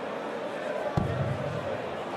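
A steel-tip dart striking the bristle dartboard once, a sharp thud about a second in, over a steady murmur from a large crowd in the hall.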